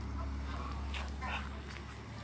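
Muscovy drake making short, breathy hissing puffs, a few in quick succession, over a steady low rumble.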